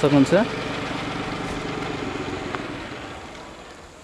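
A motor vehicle engine running steadily, gradually fading away over the last couple of seconds.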